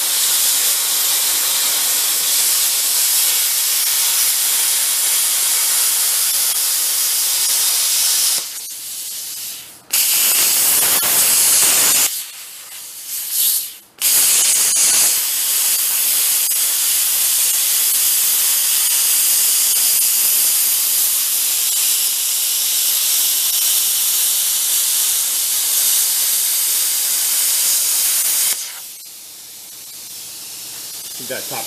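Plasma cutter cutting through diamond-plate steel: a loud, steady hiss of the arc and its air jet. The cut breaks off twice, briefly, about nine and thirteen seconds in, and stops about a second and a half before the end.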